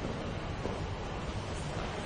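Steady hiss of background noise with no distinct event, typical of a low-quality recording's room noise.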